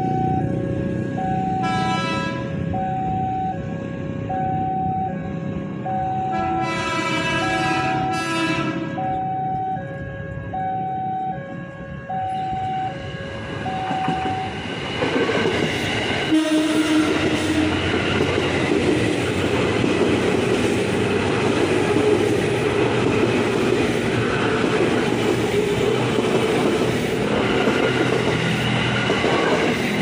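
Level-crossing warning signal sounding an alternating two-note ding-dong. A train horn blows once about two seconds in and twice more around seven to nine seconds. From about fifteen seconds a KRL commuter electric train, an ex-Japanese 205 series, passes close by, its wheels and motors on the rails loud and steady.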